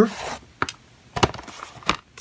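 A few sharp clicks and knocks, about four, as the aluminium case of a 15-inch MacBook Pro is handled and turned over.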